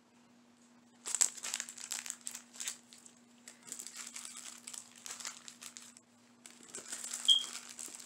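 Plastic sticker packaging crinkling and rustling as packs are handled, in a run of crackles starting about a second in, with a short break around six seconds. A faint steady low hum sits underneath.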